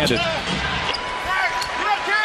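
Live basketball game sound: the arena crowd and a basketball bouncing on the hardwood court, with a few short squeaks in the second half, typical of sneakers on the floor.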